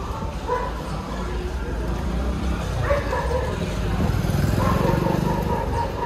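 Busy street ambience: background voices over the low rumble of passing motor traffic, growing louder in the second half.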